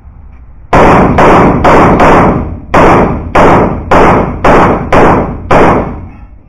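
CZ 75 Shadow pistol firing a string of ten shots, about two a second, with a slightly longer break after the fourth shot. Each shot is very loud and rings out briefly in the echo of an indoor range.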